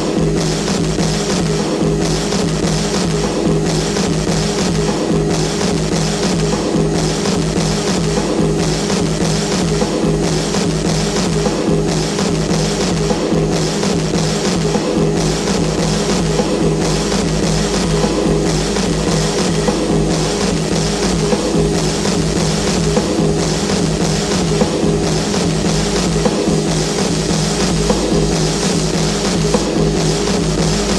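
Techno music: a steady, evenly repeating kick-drum beat over sustained low synth tones, running without a break.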